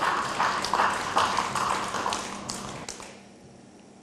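Audience clapping and laughing in response to a comedian's punchline, dying away about three seconds in.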